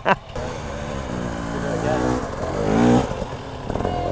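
Dirt bike engine revving unevenly as the bike climbs the steep slope, growing louder to a peak about three seconds in, then dropping away.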